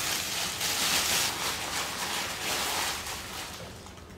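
A thin plastic carrier bag crinkling and rustling as it is pulled down over the head and gathered at the back, dying away near the end.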